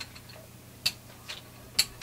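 Foam brayer rolled back and forth over acrylic paint on a gel printing plate, giving a few sharp clicks less than a second apart.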